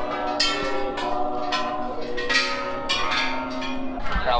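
A row of hanging bronze temple bells struck one after another by passers-by, roughly twice a second. Each clang rings on at its own pitch, so the tones overlap.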